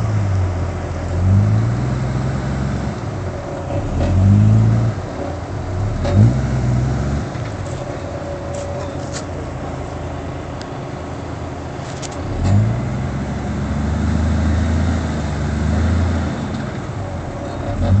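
Diesel Toyota LandCruiser engine revving in repeated bursts, the pitch rising each time, as the four-wheel drive pushes through a deep mud hole. Near the end it holds steadier, raised revs.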